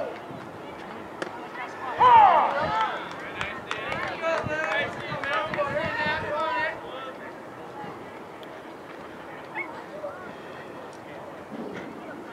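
Indistinct voices calling out at a baseball field: one loud drawn-out call falling in pitch about two seconds in, then several seconds of shouted calls and talk that die down after about seven seconds, leaving quiet open-air background.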